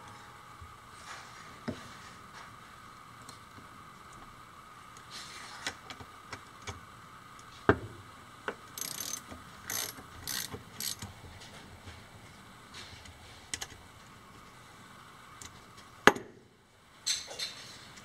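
A cleaned and reassembled 4-horsepower DC electric motor being turned and handled by hand, giving a faint steady whir with scattered clicks and short scrapes; it sounds smooth.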